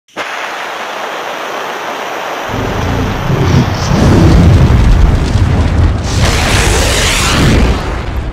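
Cinematic intro sound effects: a steady hiss, then a deep rumble joins about two and a half seconds in and grows louder, with a bright whoosh swelling near the end.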